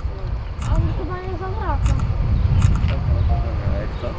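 People's voices talking over a steady low rumble, with a few short, sharp high ticks.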